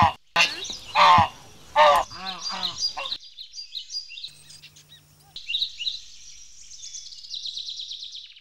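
Domestic geese honking loudly, three long honks in the first two seconds, then shorter, quicker ones. About three seconds in, this gives way to baya weavers chirping in quick, high notes that speed up into a rapid trill near the end.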